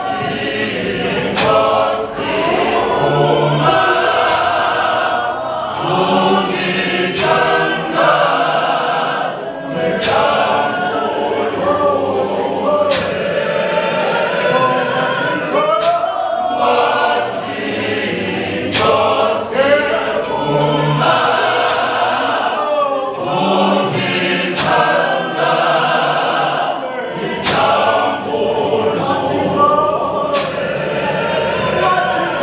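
Mixed gospel choir of men and women singing unaccompanied in harmony.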